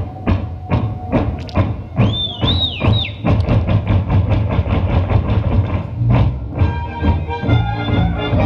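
Czech folk band music with the rhythmic clatter of dancers' wooden clogs striking the stage floor, quick even strokes of about five a second through the middle. A brief high warbling tone sounds about two seconds in.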